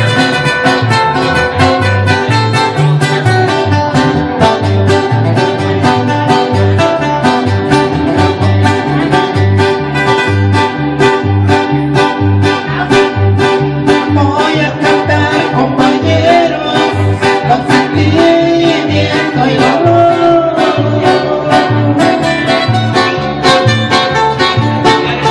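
Small live band playing a corrido on two acoustic guitars and an electric bass, the bass marking a steady two-beat rhythm under strummed chords.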